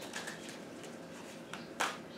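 Faint rustle of a tarot deck being shuffled in the hands, with a brief louder rustle of the cards near the end.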